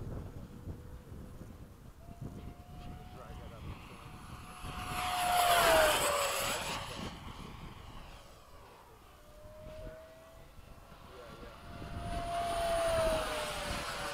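70mm electric ducted-fan RC F-16 jet making two fast passes. Each is a rushing whine that swells, peaks and drops in pitch as the jet goes by, the first about six seconds in and the second near the end.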